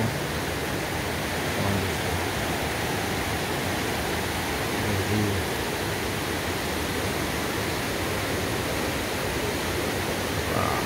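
Steady, even outdoor rushing noise with no clear single source, and faint brief low sounds about two and five seconds in.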